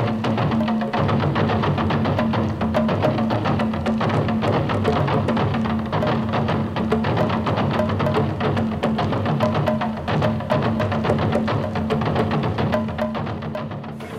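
Music with a fast, steady percussion beat over a sustained low note, fading near the end.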